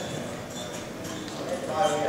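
Boxers' feet stepping and shuffling on the ring canvas in a quick irregular patter, with a voice calling out loudly near the end.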